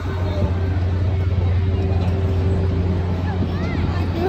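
Steady low mechanical hum of a fairground swing ride's machinery running, with faint voices near the end.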